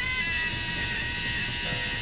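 Free jazz: a saxophone holds one long, high, overblown note over dense, busy drums and percussion.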